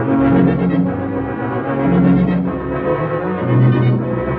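Orchestral music bridge between scenes of a radio drama: sustained low notes that step to a new pitch about every second.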